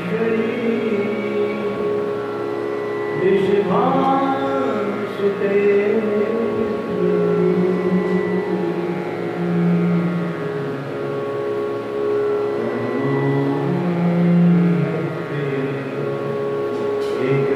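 Slow devotional chanting: a low voice holds long notes and slides between pitches, over a steady drone.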